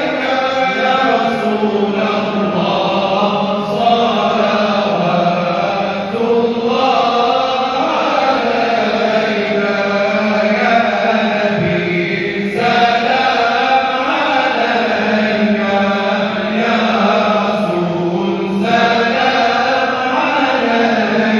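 Voices chanting a slow melodic chant in unison, in long held phrases that break about every six seconds.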